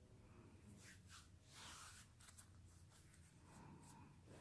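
Near silence, with faint scratchy rustling of hands twisting oiled hair into two-strand twists.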